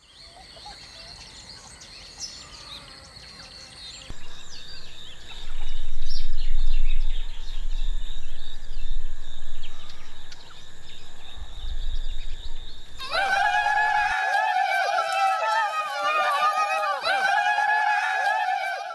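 Outdoor ambience with birds chirping, then a deep rumble that swells from about five seconds in. About thirteen seconds in, a crowd of voices breaks into loud, sustained, wavering yelling.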